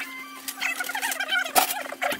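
Time-lapse sped-up work audio: high-pitched, garbled chipmunk-like voices chattering fast, with sharp clatters (the loudest a little past halfway) over a steady low hum.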